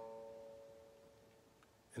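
A single guitar note on the low E string, fretted at the fifth fret (an A), plucked once and left to ring, fading away.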